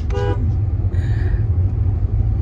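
Steady low road and engine rumble inside a moving car's cabin, with a short car-horn beep near the start.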